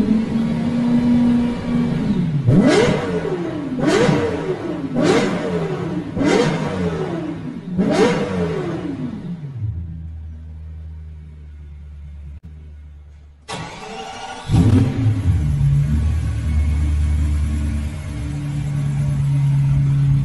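Lexus LFA's 4.8-litre V10 engine revved in five quick throttle blips, each shooting up and falling back, then dropping to a low idle. After a cut, it idles steadily with one more short rev.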